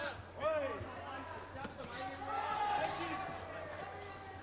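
Kickboxing bout in a ring: voices shouting from the crowd and corners, with a few sharp thuds from the ring as the fighters exchange.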